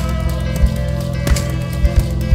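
A live band playing an instrumental passage: guitar and held notes over a drum hit roughly every half second.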